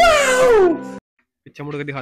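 A loud, high cry that falls steeply in pitch over a held music chord and cuts off abruptly about a second in. Near the end comes a brief burst of speech.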